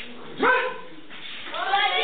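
A single short, sharp shout about half a second in: a kiai from a fighter in karate sparring. High-pitched voices start up near the end.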